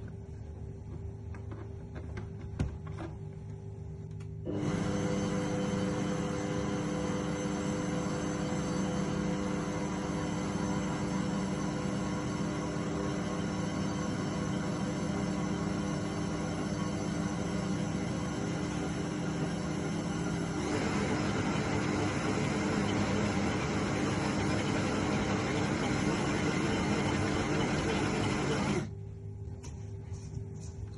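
Electric stand mixer running with its dough hook, kneading flour into a yeast dough: a steady motor hum with a few held tones. It starts about four seconds in, its sound changes about two-thirds of the way through, and it stops abruptly just before the end.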